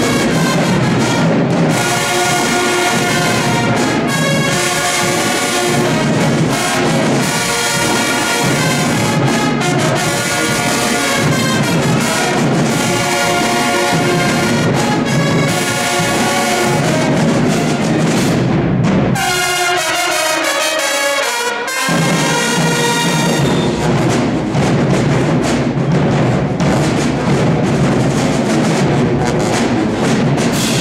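High school marching band's brass and woodwind sections playing a loud tune, trumpets and trombones leading. About two-thirds of the way through, the low brass drop out for a couple of seconds, leaving only the higher instruments, then the full band comes back in.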